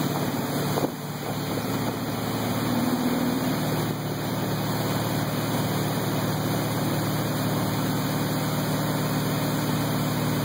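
Tow boat's engine running steadily at speed, with wind and churning wake water rushing past. A brief knock about a second in.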